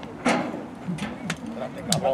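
Indistinct voices of people talking, broken by four or five sharp knocks and clicks.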